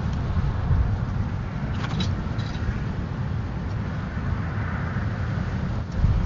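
Wind buffeting an outdoor camera microphone: a steady low rumble, with a few faint clicks about two seconds in.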